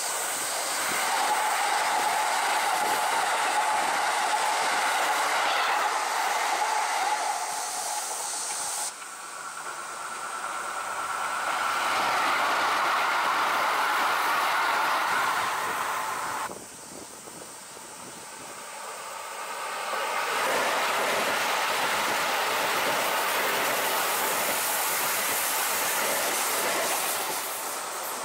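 Keikyu electric commuter trains running past: the rumble of wheels on the rails with a steady whine, the sound cutting abruptly to a different passing train about 9 seconds in and again about 16 seconds in, quieter for a few seconds before the next train comes close.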